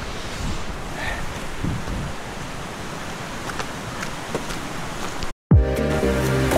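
Steady rushing outdoor noise on a handheld camera's microphone. About five seconds in it drops out suddenly and background music starts.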